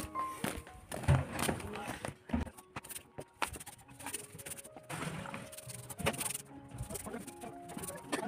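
Stiff-bristle broom sweeping concrete and grit in quick, irregular scratchy strokes, over soft background music.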